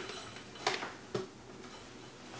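Someone shifting in bed, with three short soft clicks or taps in the first second and a half over faint room tone.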